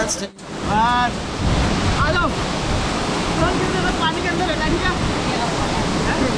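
Steady rush of a waterfall pouring into a pool, with short voices of people in the water now and then. A song cuts off just after the start.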